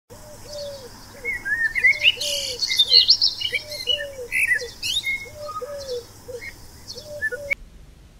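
Outdoor birdsong: several birds chirping with quick high gliding notes over a lower call repeated in short groups of notes about every second and a half. The birdsong cuts off suddenly near the end.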